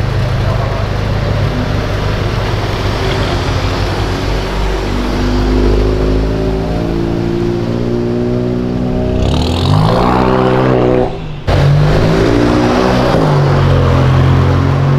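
Volkswagen Golf hatchback engines pulling away: the engine note climbs steadily in pitch from about five seconds in and rises to a sharper rev just before the sound briefly drops out. After that a second engine runs with a strong, steady, deep note.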